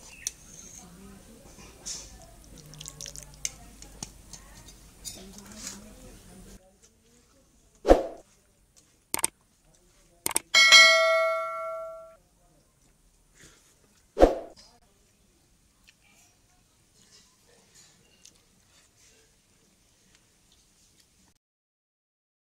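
Faint background with low voices, then an abrupt drop to silence. After that comes a subscribe-button sound effect: a few sharp clicks, then a bell ding that rings out for over a second, and one more click.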